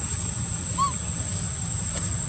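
A single short animal squeak that rises and falls in pitch, just under a second in, over a steady low background rumble.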